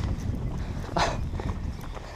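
Footsteps on a muddy dirt path with a steady low rumble on the camera microphone, and a louder scuff about a second in.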